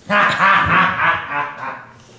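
A man's loud, drawn-out vocal exclamation in a warbling, wavering voice, lasting about a second and a half and fading away.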